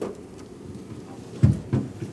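Handling noise on a handheld microphone: two dull thumps close together about a second and a half in, over quiet room tone.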